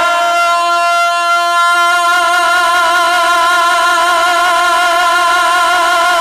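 A male naat reciter singing one long held note into a microphone, the pitch steady with a slight waver.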